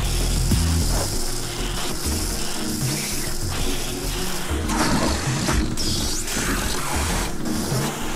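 Handheld electric shaver buzzing as it is run over a face, with music underneath.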